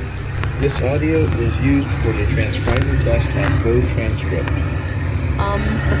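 Playback of a transcription-test recording: a steady low rumble of background noise with indistinct talking over it. A voice starts "Um, the" near the end.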